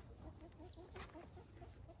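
Domestic hens clucking faintly in a quick run of short, low calls.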